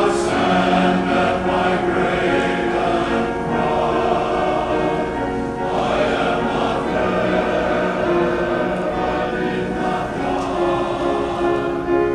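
Men's chorus singing in several parts, holding long sustained chords.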